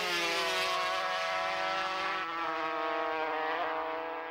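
Racing motorcycle engine holding a steady high note whose pitch sinks slightly in small steps, fading out at the end.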